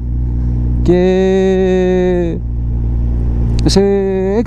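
Suzuki Hayabusa second-generation inline-four with a Yoshimura R-77 exhaust, running steadily at low speed as a low hum, with no revving. Over it a man's voice draws out a hesitant "kai…", which is the loudest sound, and then starts another word near the end.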